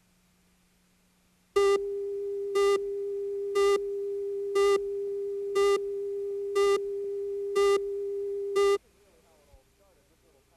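Line-up tone on a TV program tape's leader: a steady single tone with a louder pip once a second, eight pips in all, starting about a second and a half in and cutting off sharply near the end.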